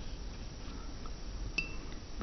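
A single light clink, the ringing tap of a paintbrush against a glass water jar as it is dipped for water, about one and a half seconds in, over faint room tone.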